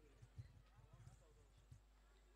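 Near silence, with a few faint, short low knocks.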